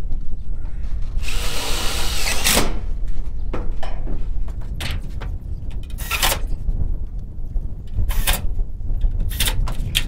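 Cordless drill driving roofing screws through a sheet-metal ridge cap: one run of about a second and a half, falling in pitch as it ends, then several short bursts.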